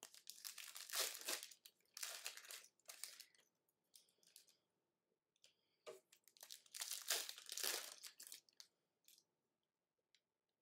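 Foil trading-card pack wrappers crinkling and tearing as they are opened by hand. The rustling comes in bursts, loudest about a second in and again around seven seconds in, with a quiet gap midway.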